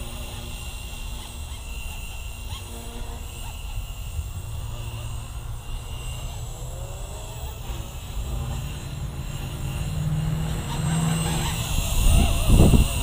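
Blade 230S V2 electric RC helicopter flying at a distance: a faint motor and rotor whine over steady wind rumble on the microphone. It grows louder over the last couple of seconds as the helicopter comes in close overhead.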